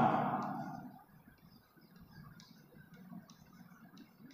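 Chalk writing on a blackboard: faint, light, irregular taps and scratches as letters are formed.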